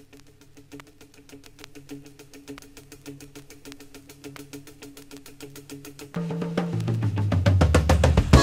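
Opening of a song: quiet, rapid ticking percussion, about seven ticks a second, over low held tones. It grows much louder about six seconds in as a bass line comes in.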